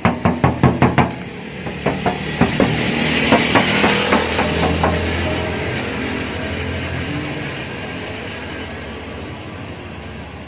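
A hand knocking on a car's metal body panel: a quick run of sharp knocks, about six a second, in the first second, then scattered knocks while a rushing noise swells and fades.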